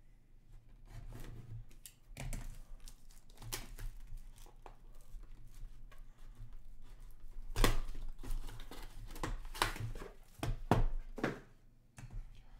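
Plastic shrink wrap being slit with a small tool and torn off a sealed hockey card box, then the box pulled open: a run of irregular tearing and crinkling, loudest in the second half.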